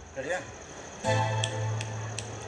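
Piano accordion sounding a low held bass note from about halfway in, lasting about a second, with a few faint clicks over it.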